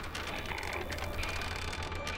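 Quiet suspense sound design from a horror film soundtrack: a rapid, irregular run of faint clicks over a steady low drone.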